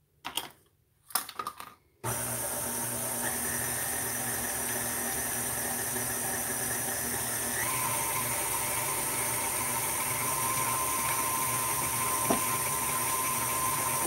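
A couple of brief knocks, then an electric stand mixer starts about two seconds in and runs steadily, beating cream cheese, butter and powdered sugar with its paddle. Its motor whine steps up in pitch about halfway through as the speed is turned up.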